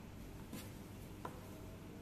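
Faint rubbing and rustling of a braided rope handled in the fingers while a bowline is tied, with one small click a little over a second in, over a low steady room hum.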